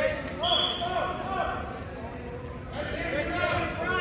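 Referee's whistle blown once, a short steady note about half a second in, signalling the start of the wrestling bout. People are talking and calling out in the background, echoing in the gym.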